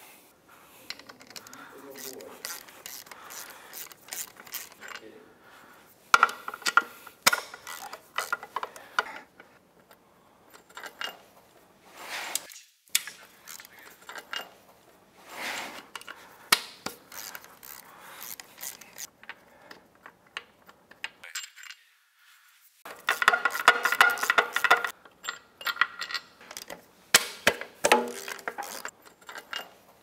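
Socket ratchet clicking in several bursts of rapid clicks while backing out the main bolts that hold an outboard powerhead down, with lighter metallic clinks of socket and bolts in between.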